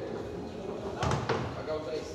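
Two sharp knocks about a second in, a quarter second apart, the first with a low thump under it: cue and balls striking on a sinuca table.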